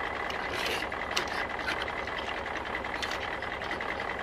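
Steady background hiss with a few faint clicks as a die-cast toy truck is handled and set down on a tabletop.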